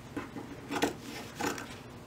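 Fabric scissors snipping through laminated cotton fabric, about three cuts some two-thirds of a second apart.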